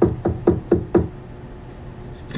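Knocking on a door: a quick run of evenly spaced knocks, about four a second, that stops about a second in.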